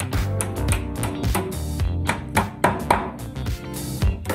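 Background music with guitar and a steady beat.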